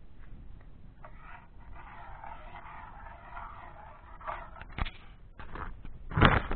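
Rustling and scraping handling noise for a few seconds, then several sharp clicks near the end, one louder than the rest.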